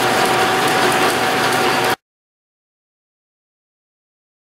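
Metal lathe turning down hex steel bar stock: the tool cuts with a steady whine and a fine crackle of chips. About two seconds in the sound cuts off suddenly to dead silence.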